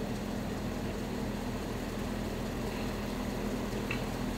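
Steady low mechanical hum of background machinery, with no distinct events.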